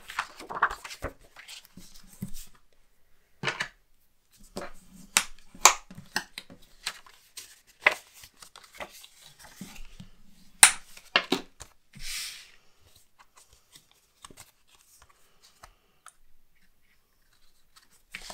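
Kraft cardstock being handled, folded and creased with a bone folder: a scattered series of sharp paper snaps and taps, with a short swish of paper sliding about twelve seconds in.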